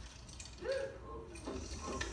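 Film dialogue playing from a television's speakers, heard across a room: brief spoken phrases starting a little over half a second in and again in the second half, over a faint low hum.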